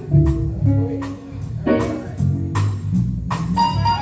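Live gospel band playing an instrumental passage: guitar lines over bass notes and a drum kit keeping a steady beat.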